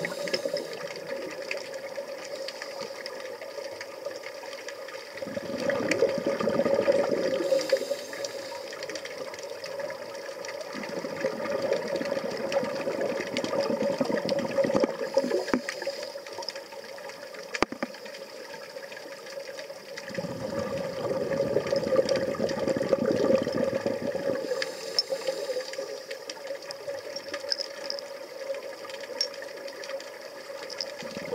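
Scuba breathing heard underwater: rumbling surges of exhaled regulator bubbles lasting a few seconds, three times, with short hissing inhalations between, over a steady underwater hum.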